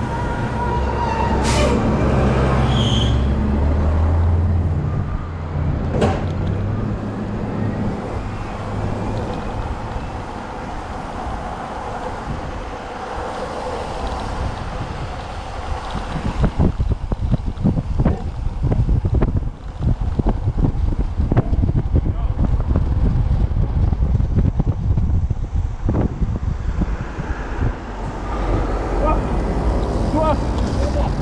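A city bus engine rumbling as it passes close by in the first few seconds, amid street traffic. From about halfway on, wind buffets the microphone heavily as the bicycle speeds downhill.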